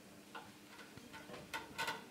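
A ceramic bonsai pot being lifted and tilted on its stand: a string of light, irregular clicks and knocks, the two loudest close together near the end.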